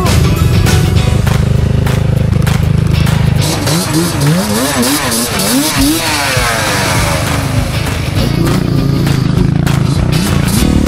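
Off-road motorcycle engines running, with the revs swooping rapidly up and down several times in the middle, over a steady low engine note. Music plays along with it.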